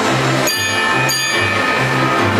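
Wurlitzer theatre pipe organ playing a swing tune, its bass line alternating between two low notes at about two and a half notes a second. Two bright, bell-like percussion hits sound about half a second and just over a second in.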